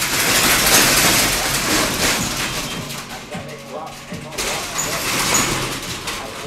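Metal roll-down security shutter rattling loudly as it is lowered, stopping abruptly about four seconds in.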